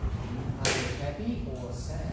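Faint speech in a room with a steady low hum, and a short breathy hiss about half a second in.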